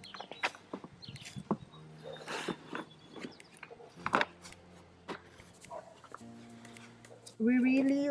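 Evenflo SensorSafe infant car seat being lowered onto its stroller and locked in: a series of plastic clicks and knocks with handling rustle, the sharpest click about four seconds in. A voice starts speaking near the end.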